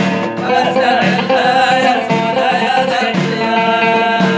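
Middle Atlas Amazigh song: a voice singing over a plucked lotar, the Amazigh lute, which keeps up a steady rhythmic pattern.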